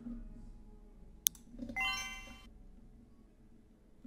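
A single sharp click, then about half a second later a short electronic notification chime from a computer. Between them there is only faint room tone.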